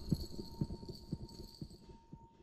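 Footsteps on a hard floor, a quick uneven run of soft knocks that grows fainter as the walker moves away.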